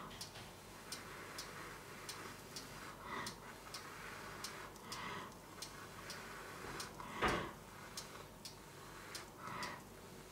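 A clock ticking steadily, about two ticks a second, under soft whooshing swells every second or two. There is one louder thump about seven seconds in.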